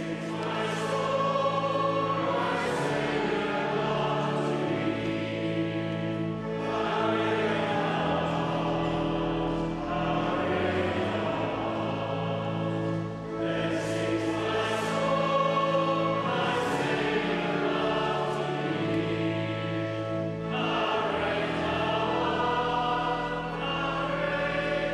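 A church congregation singing a slow hymn together, in long held phrases with brief breaks between them.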